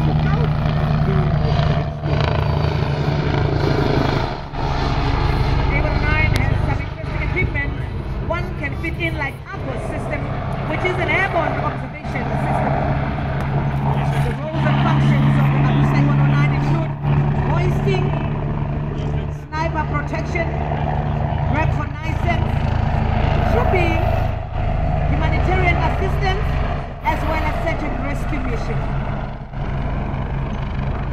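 Steady low engine drone from a low-flying military helicopter and ground vehicles, with people talking over it throughout.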